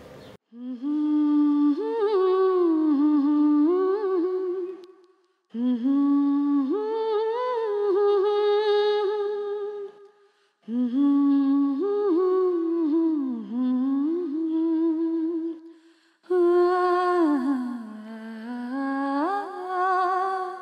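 A single unaccompanied voice humming a slow, wavering melody in four phrases, with short breaks between them.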